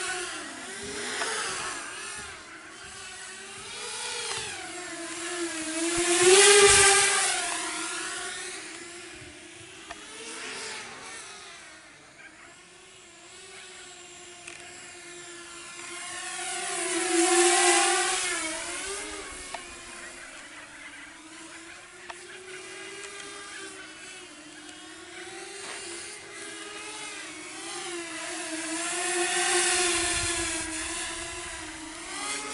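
Walkera F210 racing quadcopter's brushless motors and propellers buzzing in flight, the pitch wavering up and down with the throttle. It gets much louder as it passes close, about six seconds in and again near seventeen seconds, then fades as it flies off.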